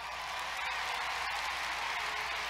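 An audience applauding, a dense, steady patter of many hands clapping that swells slightly at first and then holds.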